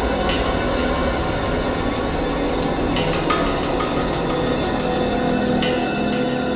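Background music: a suspense score of sustained tones with light, scattered percussive ticks, holding at a steady level.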